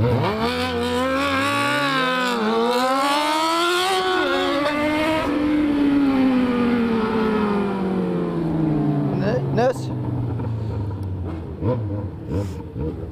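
Yamaha XJ6 inline-four with a straight-through 4-into-1 exhaust accelerating hard, its pitch climbing steeply for about four seconds while another motorcycle engine climbs alongside. The engine then drones down slowly in pitch as the throttle is eased off.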